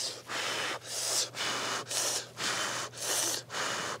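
A man blowing hard and repeatedly on a chopstick-load of hot ramen noodles to cool them: about seven breathy puffs, nearly two a second.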